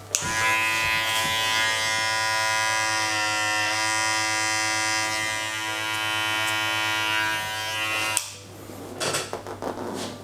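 Electric hair clippers switched on, running steadily for about eight seconds, then switched off, followed by a few short handling clicks and rustles.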